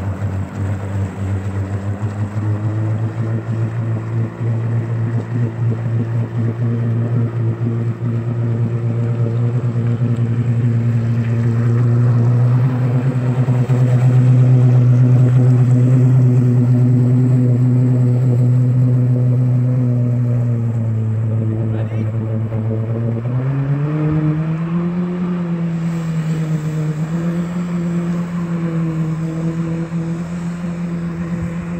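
Jet ski engine running steadily while driving a water-jet flyboard through its hose, growing louder towards the middle. From about 23 s in the revs rise and then waver up and down as the thrust lifts the rider out of the water.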